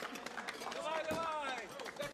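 A group of people clapping and cheering, several voices calling out at once over the applause.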